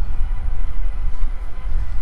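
Riding noise from an e-bike rolling along a paved path at about 20 mph: a steady low rumble of wind buffeting the microphone, with tyre noise on the pavement.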